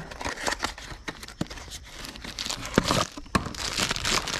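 A small cardboard parts box being opened by hand and the plastic bag inside pulled out, with irregular crinkling and rustling that gets busier in the second half.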